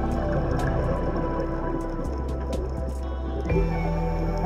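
Background music of slow sustained chords over a low bass note that changes about halfway through and again near the end.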